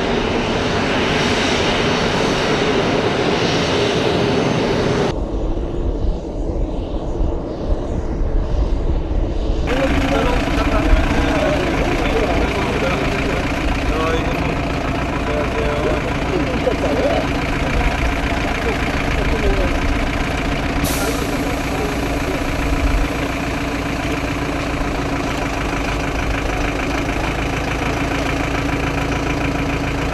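A steady engine running, with indistinct voices over it. The sound changes abruptly twice, at about five and about ten seconds in, and a steady hum runs through the later part.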